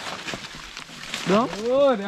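Footsteps and rustling of leaves and brush from walking through forest undergrowth, then a man's voice from a little over a second in.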